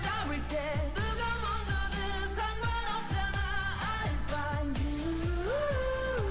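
Korean pop-rock band song with a male lead vocal sung in a light mixed voice between belted phrases, over drums and guitars.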